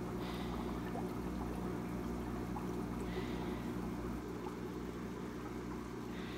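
Steady low hum with a faint, even trickle of water over it, unchanging throughout.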